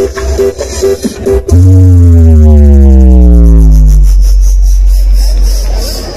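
Electronic DJ dance music played very loud through a large outdoor sound system. A brief break of short chopped notes comes first; then, about a second and a half in, a heavy bass tone drops in and slides slowly down in pitch, fading over the next few seconds.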